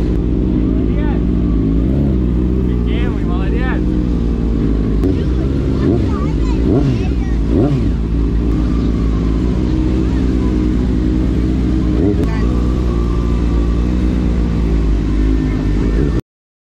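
Sport motorcycle engine running steadily at low revs while rolling at walking pace, heard close up from the rider's helmet.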